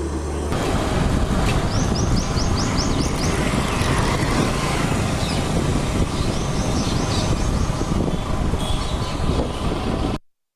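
Roadside motor-vehicle noise: a steady rushing sound that swells about half a second in, with two short runs of rapid high ticking, one about two seconds in and one about seven seconds in.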